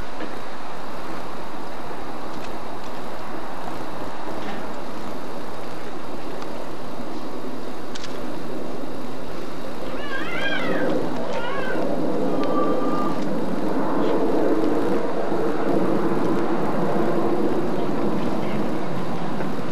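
Steady outdoor background noise, a constant hiss on the microphone, with a few short high wavering cries about ten seconds in.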